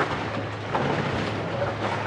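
Steady background noise: a low hum under an even rushing hiss, with no distinct event.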